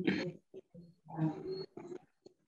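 A person's voice speaking in two short phrases, one at the start and one just past the middle, with a brief gap between. The recogniser wrote none of it down.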